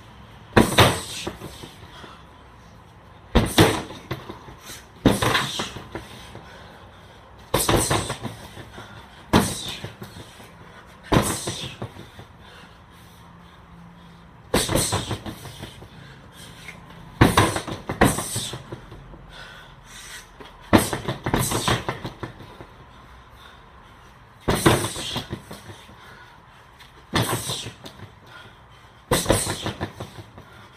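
Kicks and punches landing on an Everlast Powercore freestanding heavy bag: about fourteen thuds at uneven gaps of one to three seconds, each followed by a short rattling tail as the bag shakes on its base.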